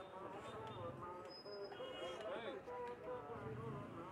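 Faint overlapping voices of several people talking at once, over a low street hum, with one brief high tone about a second and a half in.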